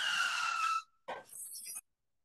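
Sound effect from a racing-themed quiz game, marking a wrong answer: a skid-like noise with a slightly falling whistle, under a second long, followed by a shorter, rougher sound.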